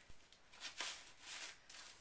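Faint rustling of a fabric shoe bag and the fleece wrap inside it being handled and pulled open, in a few soft swishes.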